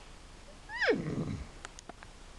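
A person imitating a horse's whinny with the voice: one high squeal that falls steeply in pitch, lasting under a second. A few faint clicks follow near the end.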